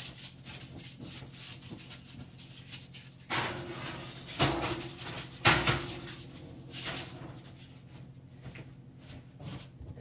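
Muffled kitchen clatter: several sharp knocks and clunks between about three and seven seconds in, over a steady low hum, as a baking tray of foil-wrapped beets goes into the oven.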